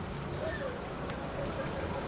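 Street ambience: a steady rumble of road traffic, with faint voices in the background.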